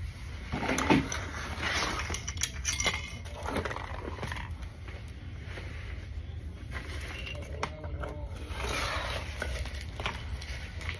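Small hard toys and objects rummaged and dragged out from under a bed onto a tile floor: an irregular clatter of knocks and scrapes, with a burst of rustling near the end.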